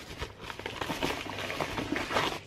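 White padded paper mailer being handled and opened by hand: a steady run of irregular crinkles and small rips.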